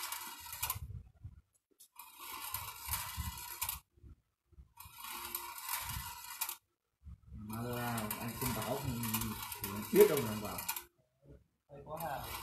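Steel balls rolling and rattling along a bent-wire marble track, a fast clicking that comes in four spells with short breaks between them. A voice is heard in the background from about halfway through.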